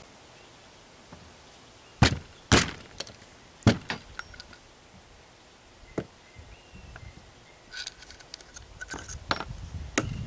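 A few sharp knocks about two to four seconds in: a nail punch struck to drive the spent primer out of a shotgun hull's primer pocket, one more lighter knock after. Near the end come light metallic clicks and clinks of small metal parts being handled.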